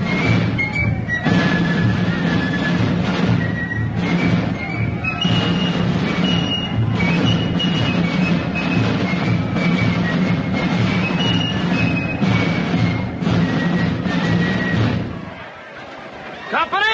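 A band playing a military march: a stepping high melody over a steady, even drumbeat. It stops about a second before the end.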